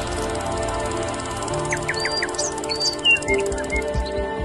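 Intro music of steady held tones for a logo sting, with a few short bird-like chirps about two seconds in.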